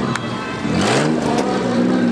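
Race car engine revving hard as the car accelerates out of a turn. Its pitch climbs sharply about a second in, over the steady running of the other cars on the track.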